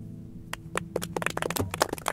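The last strummed acoustic guitar chord rings out and fades. From about half a second in, a run of irregular sharp clicks starts and comes faster toward the end.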